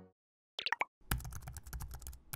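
Animation sound effects: a few quick pops about half a second in, then a rapid run of keyboard-typing clicks from about a second in as a web address is typed into a search bar.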